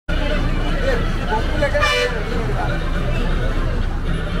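Bus engine running at idle with people talking around it, and a short vehicle horn toot about two seconds in.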